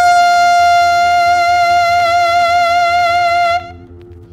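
Instrumental opening of a pasodoble on a 45 rpm record: a wind instrument holds one long high note, its vibrato widening, and breaks off about three and a half seconds in. A low steady pulse of accompaniment runs beneath.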